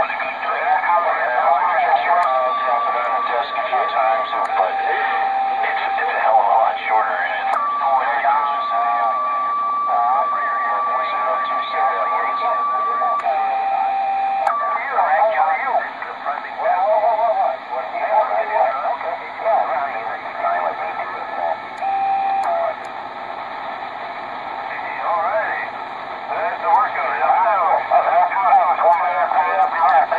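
CB radio receiver's speaker playing distant stations talking through static on an evening channel full of skip, with steady whistle tones coming and going over the voices. This is the RG-99 receiving after its AGC-circuit repair.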